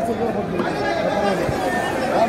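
Several people chattering close by, their voices overlapping.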